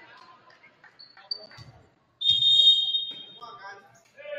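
Referee's whistle blown once, a shrill steady blast of about a second starting about two seconds in. It is the loudest sound, preceded by a low thud and faint voices in a large gym.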